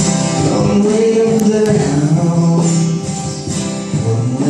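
Live acoustic bluegrass-gospel music: several acoustic guitars strumming, with singing voices.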